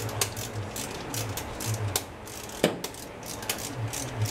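Hand ratchet wrench clicking in short irregular runs while working the carburetor hold-down nuts on a small-block Chevy 350, with one sharper metallic knock a little past halfway.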